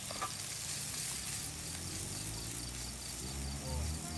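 Insects chirping in a fast, even pulse over a soft, steady hiss of food frying in a pan on a portable camping gas stove.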